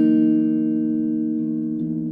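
Clean electric guitar chord struck once and left to ring, its notes sustaining and slowly fading, with a lower note changing near the end.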